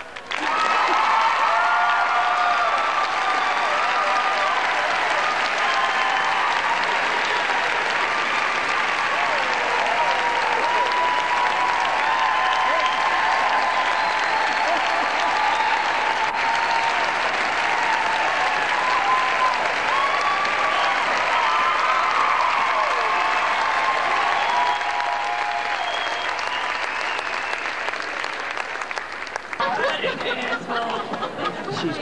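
Audience applauding and cheering, with voices calling out over the clapping; it holds steady and eases off a little in the last few seconds.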